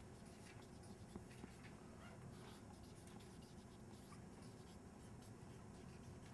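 Near silence: room tone with faint, scattered scratching of writing.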